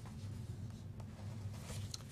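Quiet room tone: a steady low hum with a couple of faint clicks, about a second in and near the end.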